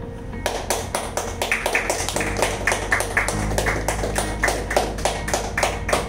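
Hands clapping in a fast, steady rhythm, about five claps a second, starting about half a second in, over background music.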